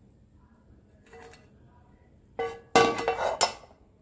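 A steel spoon scrapes and clinks against a metal pan, scraping out sugar syrup. It is faint at first, with a sudden louder burst of ringing metallic clatter about two and a half seconds in that lasts about a second.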